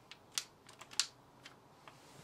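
Light, scattered clicks from the trigger of a REC-CN58 battery hydraulic crimping tool being pressed several times while its motor stays silent: the tool has lost power. The two loudest clicks come about a third of a second in and at one second.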